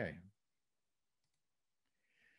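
A man's narrating voice trails off at the start, then near silence with a few faint, scattered clicks.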